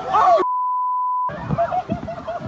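A steady single-pitch broadcast censor bleep, just under a second long, starts about half a second in and blanks out a spoken word. Excited voices are heard just before and after it.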